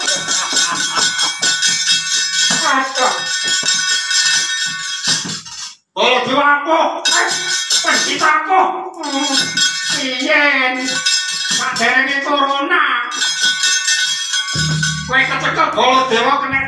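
Javanese gamelan accompaniment with a voice singing or chanting over it, and metal keprak plates clinking. The sound cuts out briefly about six seconds in, and a low steady tone comes in near the end.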